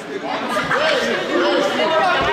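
Several voices calling out and chattering at once in a school gymnasium, echoing off the hall, louder from about half a second in.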